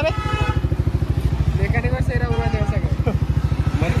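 Yamaha R15 V4's single-cylinder four-stroke engine idling steadily, with an even, quick pulse of about ten beats a second.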